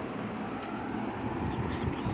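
Steady low background rumble with an even hiss, unbroken throughout.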